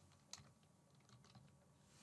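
A few faint computer keyboard keystrokes, single taps spaced apart, against near silence.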